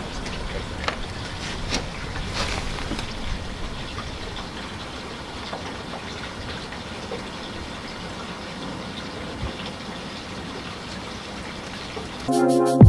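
An engine runs with a steady low hum, with a few light clicks and knocks in the first three seconds.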